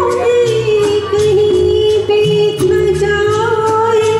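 A woman singing into a microphone over instrumental accompaniment with a bass line and a steady beat, holding long, wavering sung notes.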